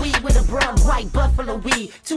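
Hip hop track: rapping over a beat with a heavy kick drum. The music drops out for a moment near the end.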